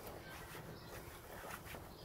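Faint rubbing and scratching of an applicator pad being worked over textured black plastic bumper trim, applying a trim restorer.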